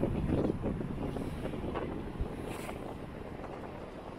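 Wind buffeting the microphone of a moving car, over low road and engine rumble, fading gradually. A small knock sounds about two seconds in.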